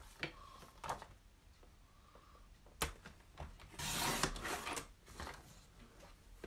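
Cardstock being handled and cut on a paper trimmer: a few light clicks and taps, a sharper click near three seconds in, then about half a second of scraping swish as the trimmer blade is drawn through the card.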